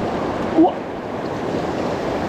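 Fast mountain stream rushing over rocks: a steady, loud rush of white water.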